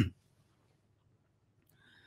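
Near silence: a pause in a man's speech, with his last word cut off at the very start and a faint short sound near the end.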